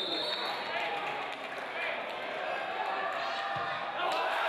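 Sparse stadium crowd shouting and chattering, with a short, high referee's whistle blast at the very start.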